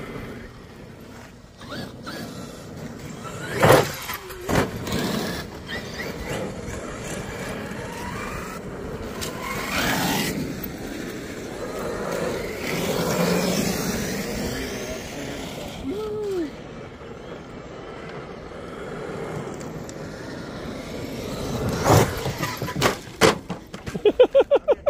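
Large-scale RC monster trucks driving on gravel, their motors and tyres running unevenly, with a few sharp knocks, the loudest about four seconds in and again near the end.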